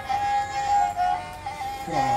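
Sarinda-type bowed fiddle playing a melody on a high, sustained note with a brief dip and step up in pitch about halfway through.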